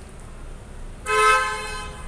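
A single horn toot at one steady pitch, lasting just under a second, starting about a second in.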